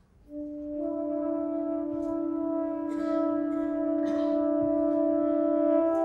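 A saxophone and a brass instrument hold long, steady notes together in a chord. The notes come in about half a second in, another joins a moment later, and the chord moves to new notes near the end.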